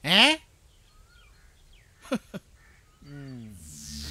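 Faint birds chirping in quiet outdoor ambience, after a short spoken 'eh' at the start, with a brief sharp call about two seconds in. Near the end a low falling musical tone comes in, leading into background music.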